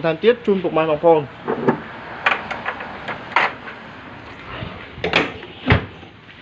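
A few light knocks and clicks, then a heavy thud near the end as the 1994 Toyota Corolla's steel bonnet is lowered and slammed shut.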